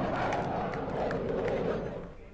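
Indistinct voices over a steady rushing noise with scattered clicks, cutting off abruptly at the end.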